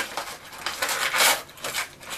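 Cardboard rustling and scraping with irregular small clicks as a piece of jewellery is worked out of a tight compartment of a cardboard advent calendar, with a short louder rustle a little past the middle.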